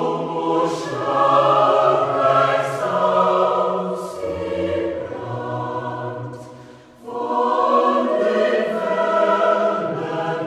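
A mixed choir of women's and men's voices singing a slow song in sustained chords. One phrase fades out about seven seconds in and the next phrase starts right away.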